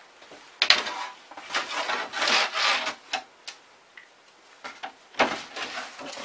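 A sheet of box cardboard being handled on a wooden workbench: scraping and rubbing sounds with a few sharp taps, the longest scrape in the middle.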